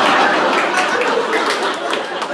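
Audience laughing and clapping, the noise easing off toward the end.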